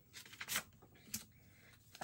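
A pen scratching on paper in a few short strokes, ticking items off a checklist, with a sharp click about a second in.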